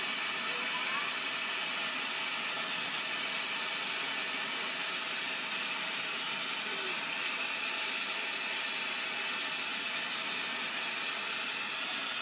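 Lampworking bench torch burning with a steady, even hiss as glass is worked in its flame.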